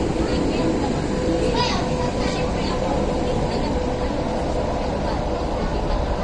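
Hong Kong Light Rail two-car train pulling away, its running hum with a steady whine that fades toward the end, under the voices of people on the platform.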